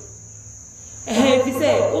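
A brief pause, then a voice starts speaking about a second in. A steady high-pitched whine runs underneath throughout.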